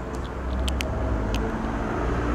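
A motor vehicle engine running close by, a steady low rumble growing a little louder, with a few light clicks.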